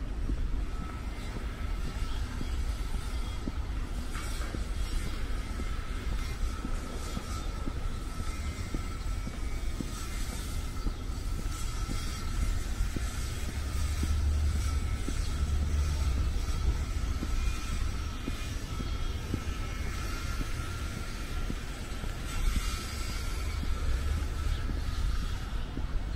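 Steady low rumble of a distant engine, swelling about two-thirds of the way through, with a faint high steady tone held throughout.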